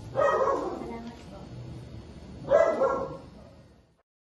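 Two loud, sudden cries, one at the start and another about two and a half seconds later, each trailing off, over a low background murmur.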